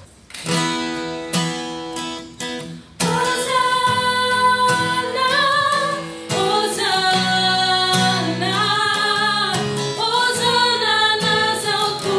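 Acoustic guitar strumming chords, joined about three seconds in by a few female voices singing the soprano line of the song in unison.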